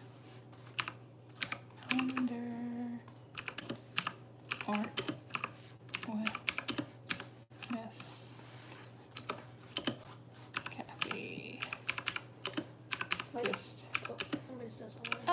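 Typing on a computer keyboard: irregular runs of key clicks with short pauses between them.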